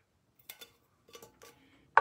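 Faint light taps and clicks of an empty tin can being handled while vinyl heart stickers are pressed onto it, once about half a second in and again a little past a second.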